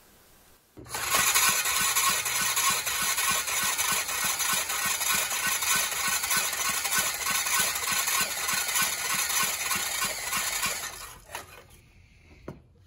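1998 10 HP Briggs & Stratton L-head generator engine being cranked over by its starter for about ten seconds with a compression gauge fitted, turning over fast and evenly with a steady whir. It is cranking with no compression at all, which points to a bad valve seat or a blown head gasket.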